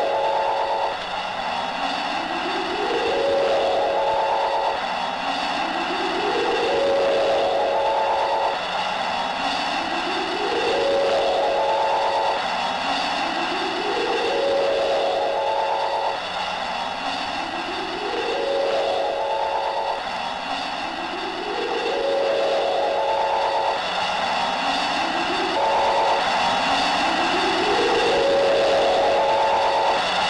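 Looping electronic sound effect for a flying chariot in flight. A pitch rises steadily for about three seconds, drops back suddenly, and rises again, about every four seconds, over a steady high hum.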